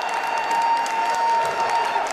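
Spectators clapping and cheering a goal, with a long steady high tone held over the applause that stops near the end.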